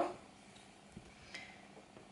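Quiet room tone with two faint, short clicks, about a second in and again a moment later.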